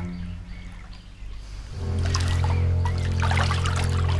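Film score holding a sustained low drone that swells louder about two seconds in, over stream water trickling and splashing.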